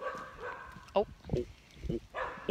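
A dog barking three times, short and sharp.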